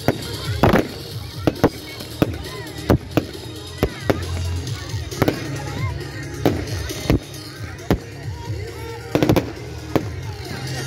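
Fireworks going off overhead: a string of sharp bangs, roughly one a second, some echoing, with the loudest about a second in and again near the end.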